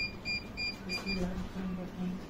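Five quick, high electronic beeps in a fast run during the first second, followed by a low hummed voice in short pieces.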